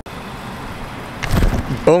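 Road traffic noise, a steady hum with a louder rush about a second and a half in; a man starts talking near the end.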